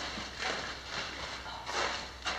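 Footsteps on a hard floor, about two steps a second, as someone walks slowly through the room.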